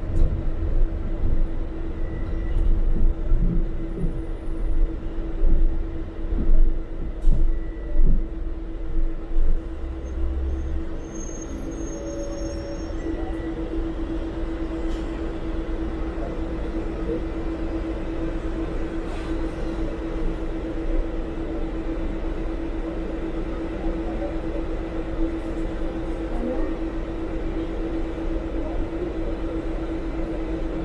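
A TransMilenio articulated bus heard from the driver's cab. For the first ten seconds or so, the engine rumble and the body's rattles and knocks come in uneven surges. From about eleven seconds in it settles into a quieter, steady rumble with a constant hum.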